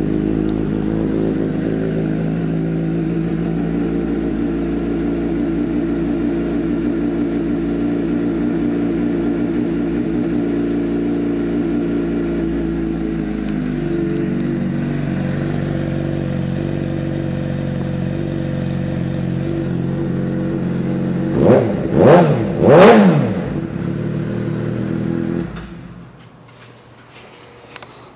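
2006 Suzuki GSX-R600's inline-four engine, fitted with an aftermarket M4 exhaust, idling steadily, its idle note changing about halfway through. Near the end it is revved quickly three times, then shut off.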